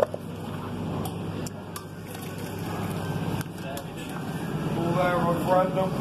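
Self-serve soft-drink fountain: a sharp click at the start as the cup goes under the nozzle, then a steady low hum and the soft rush of the machine, with a child's voice near the end.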